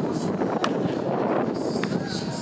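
A wooden baseball bat cracking against a pitched ball once, sharply, about half a second in, over a steady background of voices and stadium noise. A fainter click follows near the end.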